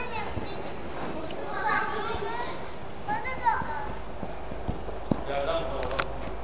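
A young child's voice calling out in short wordless bursts, four times, over a steady background hum, with a couple of faint short knocks in the second half.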